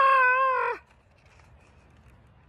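A woman's voice giving a long, drawn-out mock wail, held at one pitch and then sliding down and breaking off just under a second in.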